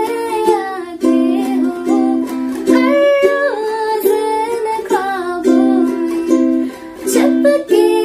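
A woman singing a Hindi song to her own strummed ukulele accompaniment, on a Dm–C–Gm–C chord progression.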